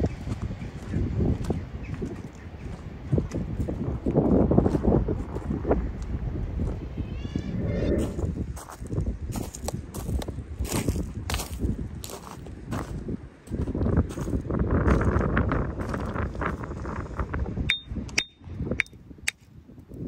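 Rock hammer striking a shale slab and a fossil nodule, a long run of sharp knocks from about eight seconds in, working the nodule free and splitting it open. The last few blows ring briefly and metallically. Before the blows there is a steady rush of wind noise.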